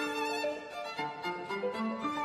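Violin played with piano accompaniment: a held bowed note at the start, then a string of shorter notes in a classical piece.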